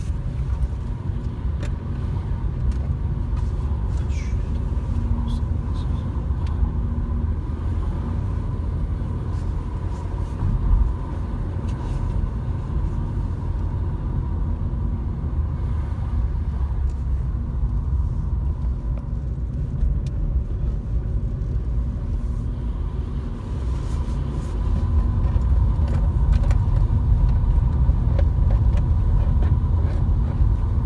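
Car cabin noise while driving: a steady low rumble of engine and tyres on the road, heard from inside the car. It grows louder about three-quarters of the way through as the car picks up speed.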